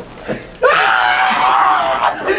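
A man squealing in one long, loud, high-pitched scream that starts about half a second in, as he is pinned down in a scuffle on a couch.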